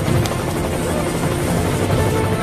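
Helicopter rotor and engine sound, steady, over background music.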